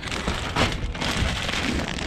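A plastic bag crinkling and rustling as it is handled close to the microphone: a dense, steady crackle.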